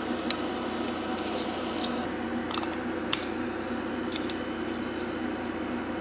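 Steady electrical hum with faint steady tones, broken by a few small, light clicks from hands handling a plastic battery charger.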